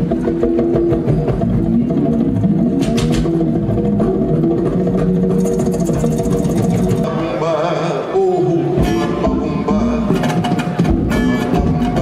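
Live band music on upcycled instruments: plucked saz-like strings built from a pot and a can, with light percussion and scattered clicks.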